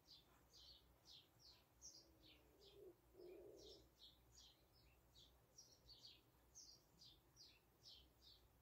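Faint bird chirping: a steady run of short, high, downward-sliding notes, two to three a second, over near-silent room tone, with a faint low sound about three seconds in.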